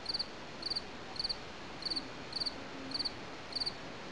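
A cricket chirping steadily: short, high trills about twice a second over faint background hiss.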